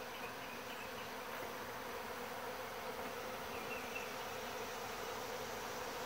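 Steady buzzing of a large mass of honey bees feeding at open sugar-water bucket feeders.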